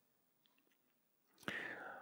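Near silence, then about a second and a half in, a man's faint breath drawn just before he speaks again, picked up close by a headset microphone.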